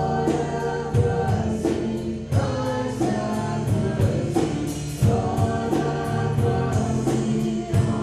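Live worship music: a band at the front of the church plays and sings a worship song, with group singing over sustained chords and a steady beat.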